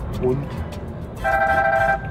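Mobile phone ringing: one steady electronic ring tone, about three-quarters of a second long, starts a little past halfway through. Under it is the low hum of the truck cab.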